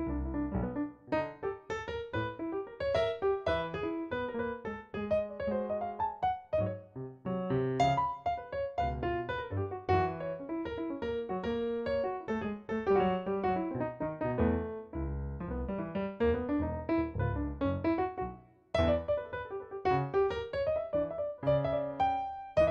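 Roland digital stage piano played with both hands: a steady flow of notes and chords in a piano voice, with a short break about three-quarters of the way through before the playing resumes.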